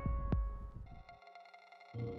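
Low rumble on an outdoor microphone fading out over the first second, with a single click, followed by faint steady tones and a moment of near quiet.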